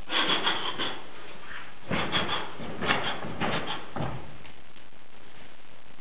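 Quick swishes and scuffs from a performer's fast martial-arts moves, in four short clusters over the first four seconds.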